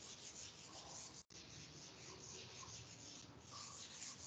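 Faint, scratchy strokes of a marker writing on a whiteboard.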